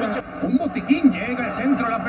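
Speech only: a voice talking, with a "no" near the end.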